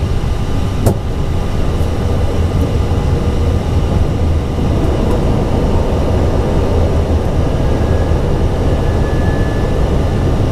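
Steady low rumble of airflow and engines heard inside an Airbus A320 cockpit on approach, with the landing gear just lowered. A single short click sounds about a second in.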